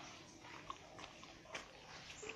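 Faint chewing close to the microphone: a few soft, irregular mouth clicks and smacks.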